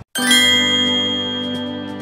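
A bell-like chime struck once after a moment's silence, its many overtones ringing on and slowly fading.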